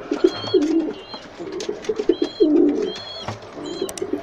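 Young pigeons cooing in short repeated phrases, with a few brief high chirps in between.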